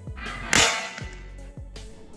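A single sharp crack about half a second in, dying away quickly: a small homemade throw bomb, a box of roll-cap powder and pebbles bound with thread, going off on hitting the ground. Background music with a steady beat runs under it.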